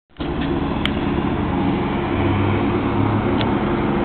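Steady low mechanical hum, like a motor running, with two faint clicks, one about a second in and one near the end.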